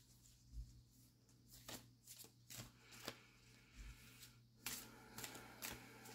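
Oracle cards shuffled by hand to draw one more card, quiet scattered flicks and slides that come closer together in the last second or so, over a faint steady low hum.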